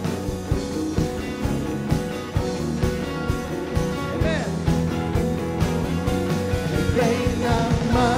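Live worship band playing a pop-rock song: electric guitars, keyboard and a drum kit keeping a steady beat, with a pitch glide about halfway through and a voice singing in near the end.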